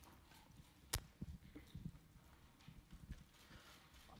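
A quiet hall with one sharp click about a second in, then a few soft thumps: handling noise, typical of a handheld microphone being passed to a questioner from the audience.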